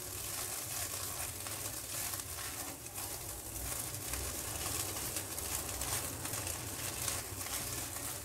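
Instant noodles sizzling in oil in a kadai on a gas stove, stirred and scraped with a spatula, a steady frying hiss.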